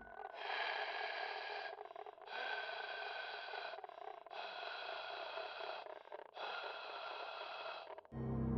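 A thin, ringing sound effect repeated four times, each stretch about a second and a half long with short gaps between. It has steady high tones and no low end, and the room sound is cut away beneath it.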